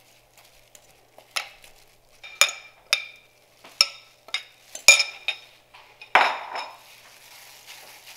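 A metal spoon clinking and scraping against a glass mixing bowl while a thick spice paste is scraped out: about seven sharp clinks over a few seconds, then one longer, rougher scrape near the end.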